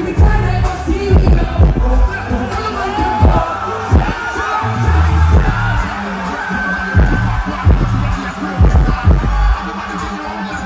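Loud live concert music from a PA system: a song with heavy, deep bass notes that slide down in pitch on the beat, with singing over it.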